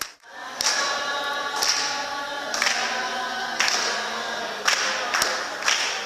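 A group of voices singing a folk song without instruments, with claps keeping time about once a second.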